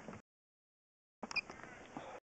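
Dead silence for about a second as the sound cuts out, then faint background hiss returns with a couple of small clicks and a brief high blip.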